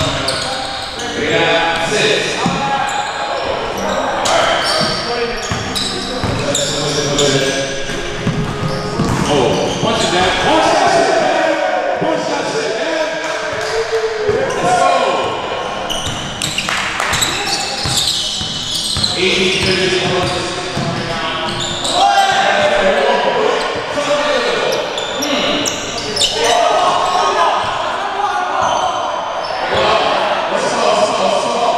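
Basketball bouncing on a hardwood gym floor during play, with players' voices calling out, echoing around a large gym.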